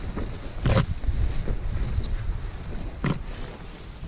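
Wind rumbling on the microphone as someone pushes through dense blueberry bushes, with leaves and branches brushing past. Two sharp knocks come about a second in and again about three seconds in.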